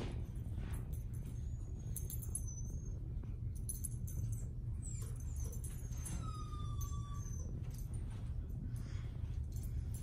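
Quiet room with a steady low hum and scattered faint clicks and light jingles from a small dog's collar tags as it searches on a leash. A brief thin high tone sounds about six seconds in.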